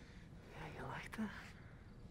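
A brief, soft whisper, with a single sharp click a little past the middle.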